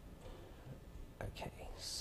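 A man's faint, breathy whispering and mouth sounds, ending in a hissing intake of breath just before he speaks again.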